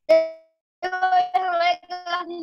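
A single bright bell-like ding right at the start that rings out and fades within about half a second, followed by a high-pitched voice holding drawn-out, sing-song tones.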